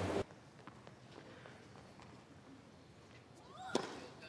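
Hushed tennis stadium between points: low, even crowd ambience with a few faint taps. Near the end come a single sharp knock and a brief rising call.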